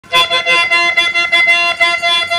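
Harmonium playing a fast melodic run, its reedy notes changing several times a second.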